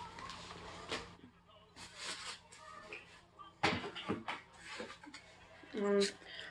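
Rustling and handling noise of small items being moved about, with a couple of light knocks in the middle: a plastic-wrapped sage bundle being set aside and folded paper money picked up.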